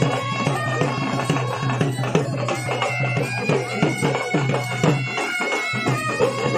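A folk band of been (pungi) reed pipes playing a wavering melody over a steady drone, with a dhol drum beating about twice a second.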